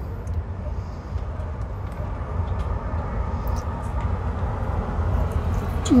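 Steady low rumble of street traffic and city background noise, with a few faint clicks.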